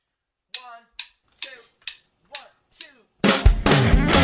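Song intro: six separate drum hits about half a second apart, each ringing briefly and dying away, then the full band comes in loud just over three seconds in.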